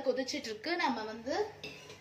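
Light clinks of steel cookware under a woman's voice.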